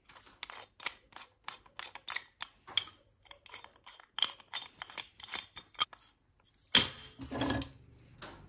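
Steel pipe wrenches clinking lightly as they are handled and knocked against other tools: short metallic ticks a few times a second. A louder burst of clatter comes near the end.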